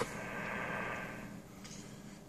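Static hiss from an amateur radio transceiver's speaker, tuned to an empty frequency on 40 m lower sideband, steady and fading somewhat after about a second and a half. The noise reads S8 to S9 on the S-meter, absolutely terrible; whether it is common-mode noise picked up on the feedline or atmospheric noise is not yet known.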